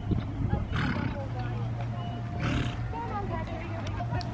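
A horse snorting twice: a short breathy blow about a second in and another about two and a half seconds in, over distant voices and a low steady hum.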